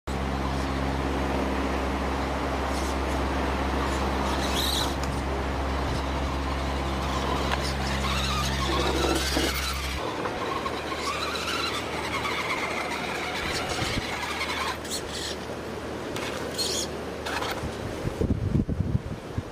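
Whine of a radio-controlled rock crawler's electric motor and gears, wavering up and down in pitch, over outdoor noise. A steady low hum runs underneath and cuts off abruptly about halfway through.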